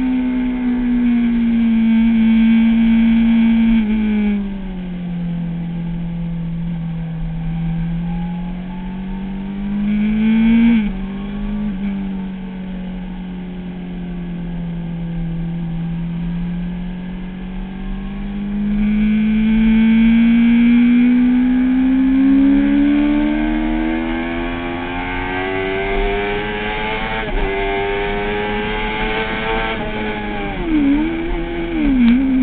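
Kawasaki ZX-6R inline-four engine heard from on board at track speed. The engine note drops about four seconds in, stays low through the middle with a brief rev near ten seconds, then climbs steadily under acceleration from about eighteen seconds, with a short step near twenty-seven seconds.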